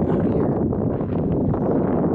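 Wind blowing across the microphone: a loud, steady low rumble.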